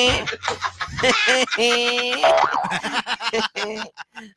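A man's voice drawing out long vowels at a steady pitch, with two long held notes broken by short syllables: sing-song, drawled vocalising rather than ordinary speech.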